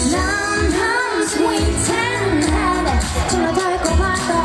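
A female pop vocalist singing live into a handheld microphone over amplified backing music with a steady beat.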